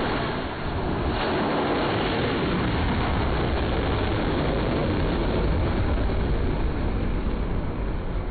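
A surface-to-air missile fired from a ship's deck launcher, its rocket motor noise starting abruptly at launch as a loud, steady rush that holds as the missile climbs away and eases slightly near the end.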